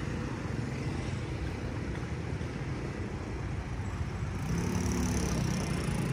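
Street traffic of motor scooters and cars, a steady low rumble of engines and tyres. A single engine drone grows louder in the last second or two as a vehicle comes closer.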